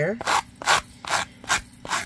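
Sanding block rubbed in short back-and-forth strokes along the rough cut edge of a thick cardboard tag, about five strokes in two seconds, smoothing out damage left by cutting.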